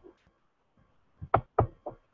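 A few quick taps, four in well under a second, starting a little after a second in.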